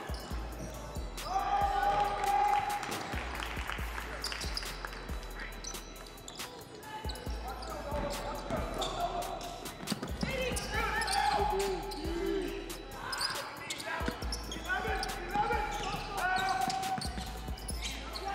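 Basketball bouncing on a hardwood gym floor during play, heard as repeated sharp knocks, with voices calling out across the gym that are loudest a second or two in and again about ten seconds in.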